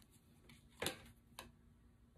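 Tarot card being drawn off the deck by hand, with two short, light clicks about half a second apart as the card comes free.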